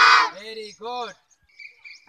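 A group of children's voices calling out together, loud and dense at first, then two short rising-and-falling voice sounds. A faint high bird call follows near the end.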